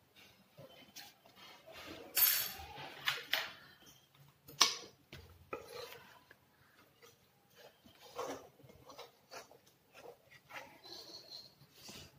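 A rolling pin rolled back and forth over a slab of halwa on a ghee-greased banner sheet, giving irregular rubbing and soft knocks, with a few sharper clacks in the first few seconds.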